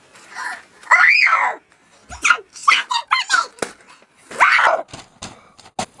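A child shrieking and yelling without words: loud cries that rise and fall in pitch, about a second in and again near four and a half seconds, with shorter cries between them. A few sharp knocks come near the end.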